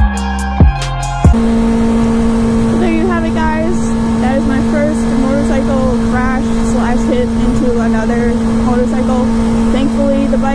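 Music with heavy drum hits cuts off about a second in. A 2006 Kawasaki ZX-6R 636 inline-four engine then runs at a steady cruising speed with a constant drone, under a haze of wind noise.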